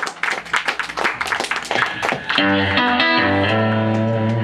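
Electric guitar played live through an amp: a quick run of sharp clicking attacks, then about two and a half seconds in a low chord struck and left ringing.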